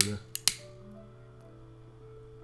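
Metal pipe lighter being worked to light a pipe: a click at the start, then two sharp clicks close together about half a second in.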